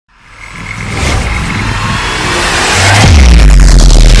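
Intro sound-effect music: a noisy whooshing swell that builds over the first second, then a heavy deep bass hit about three seconds in that holds on.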